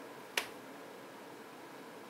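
A single short, sharp click about a third of a second in, over faint room hiss.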